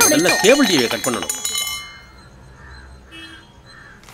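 A bright, glassy ringing chime over a man's speech, dying away within about two seconds and leaving a faint background.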